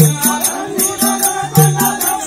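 Folk-theatre accompaniment: a two-headed hand drum beating a steady, fast rhythm, with small metal cymbals or bells striking in time over a sustained melody line.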